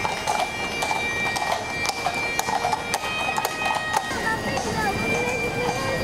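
Horses' hooves clip-clopping irregularly on the asphalt as horse-drawn hearse carriages pass, with a few held high tones over them. About four seconds in this gives way to the voices of the passing crowd.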